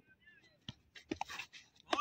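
A quiet lull of open-air ground sound: faint, distant voices and calls, with a few brief soft knocks around the middle.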